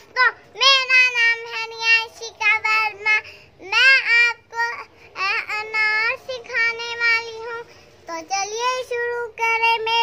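A young girl singing a rhyme solo in a high voice, holding notes between short phrases, without accompaniment.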